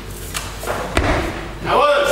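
A weightlifter's snatch: a sharp thud about a second in as the feet stamp down on the wooden lifting platform and the loaded barbell is caught overhead. Near the end, spectators' voices break out in shouts.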